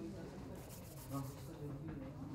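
Faint room noise with a brief rustle about half a second in, and low, indistinct voices in the background.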